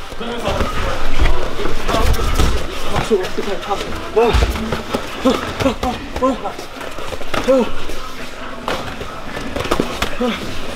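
Gym sparring: padded gloves smacking into gloves, pads and bodies in scattered sharp hits. Men's voices call out and shout among the strikes.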